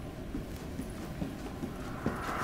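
Hurried footsteps on a hard hallway floor, about two steps a second.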